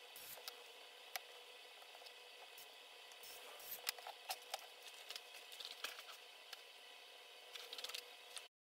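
Faint scattered clicks and taps of hands and a small screwdriver working on an open laptop's chassis as it is put back together, over a steady low hiss. The clicks come in a cluster in the middle and again near the end.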